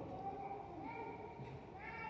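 Two high-pitched vocal calls with a rising pitch, one held for under a second and a shorter one rising near the end.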